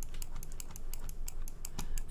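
Rapid, light, irregular clicking of computer controls, about seven clicks a second, as keys or buttons are worked while the view is navigated.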